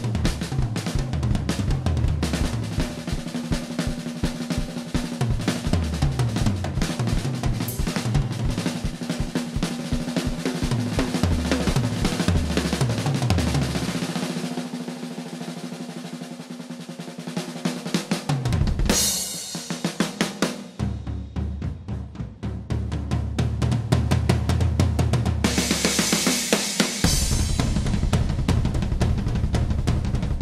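Drum kit played solo: rapid, even bass drum strokes under snare and tom fills, then the bass drum drops out for a quieter roll that swells into cymbal crashes, and the fast bass drum pounding returns near the end.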